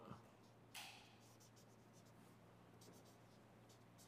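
Faint strokes of a felt-tip marker writing on paper: short scratchy strokes, with a louder one just before a second in.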